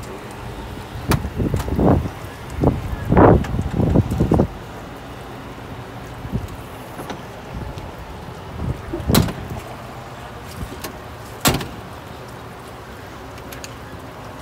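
Handling noise at a truck's side storage compartment: a run of muffled bumps for the first few seconds, then two sharp knocks about nine and eleven and a half seconds in.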